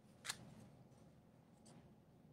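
Two brief rustling, handling noises, the first sharper and louder, as a person settles in front of the camera; otherwise near silence with faint room hum.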